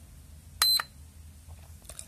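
IMAX B6 LiPo balance charger beeping once, briefly and high-pitched, as a front-panel button is pressed to step through its program menu.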